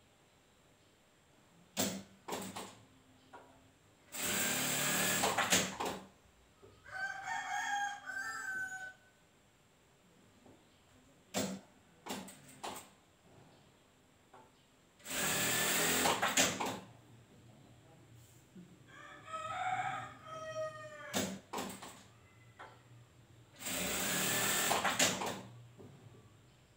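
Industrial sewing machine running in three short bursts of a second or two as a seam is stitched, with a few light clicks between them. A rooster crows twice in between the bursts.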